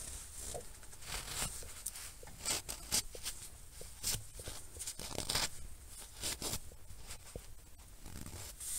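Microfiber rag wiping around the drain-plug hole on the underside of a manual transmission case: faint, irregular rubbing and scuffing with scattered small clicks.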